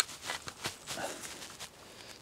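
A few soft clicks and rustles of a camera tripod being positioned and adjusted on soft swampy ground, with one sharp click at the very start.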